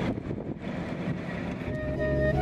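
City street ambience: a steady rumble of traffic with some wind on the microphone. Music fades in near the end.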